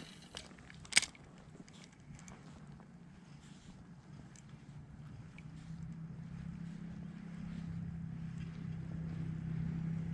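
Spinning rod and reel being handled in a kayak: a sharp click about a second in, then a low steady hum that slowly grows louder over the second half.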